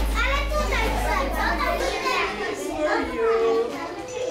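Children's voices in a room full of kids, several high voices talking and calling out over one another. A low steady hum underneath stops about halfway through.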